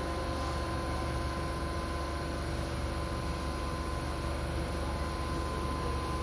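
Steady low hum with a constant thin whine from a stationary electric express train's running equipment, unchanging throughout.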